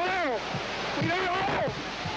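A man shouting urgent "¡Cuidado!" warnings over a continuous rushing rumble of masonry and rubble collapsing: a fresh cave-in of the ruined building.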